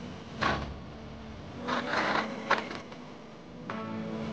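Plastic packing material on a large cardboard box being handled, with a few short bursts of rustling and stretching: the box is being wrapped and sealed.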